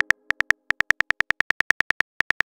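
Chat-app typing sound effect: short, high, beep-like ticks, about nine a second, one per character typed into the message box. There are brief gaps in the ticking about a quarter and half a second in.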